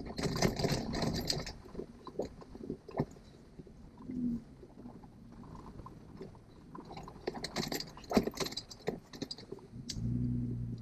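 Inside a vehicle rolling slowly over a dirt track: a low rumble from engine and tyres, with bursts of jangling and rattling from loose items in the cab in the first second or so and again about seven to nine seconds in.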